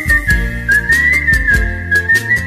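A man whistling the song's melody, a single clear wavering tune that slides gently down from note to note, over a Bollywood karaoke backing track with a steady beat.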